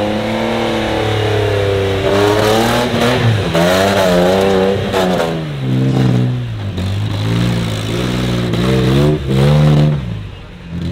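Engine of a modified extreme off-road 4x4 competition truck, revved hard again and again under load as it claws up a steep loose dirt slope. Its pitch rises and falls in long sweeps, then in a run of quicker revs in the last few seconds.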